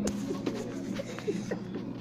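Indistinct low voices in short fragments over a steady low hum.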